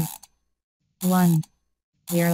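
A countdown voice calling out the numbers: the end of "two" right at the start and "one" about a second in. Each number is overlaid with a mechanical ratchet-like clicking sound effect.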